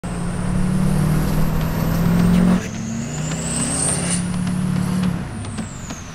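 Duramax diesel pickup's engine running under way, heard from inside the cab. It is loudest for the first couple of seconds, then eases off as a high turbo whistle climbs in pitch. The whistle falls away again near the end.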